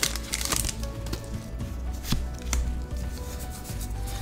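Quiet background music under light handling sounds: a few sharp ticks and soft rubbing as Pokémon trading cards are slid out of a torn foil booster pack.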